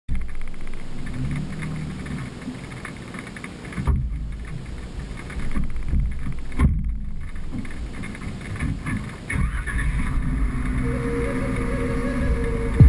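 Jeep engine running at low speed on a dirt trail, heard through a hood-mounted camera's microphone, with low wind rumble and a couple of sudden thumps about four and seven seconds in.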